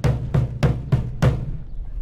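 Drums beating, snare and bass drum strokes in a quick march-like rhythm of about three to four beats a second.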